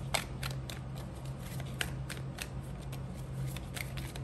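A tarot deck being shuffled by hand, the cards giving irregular sharp clicks and snaps, about seven in four seconds.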